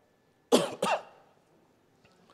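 A man coughing twice in quick succession, about half a second in.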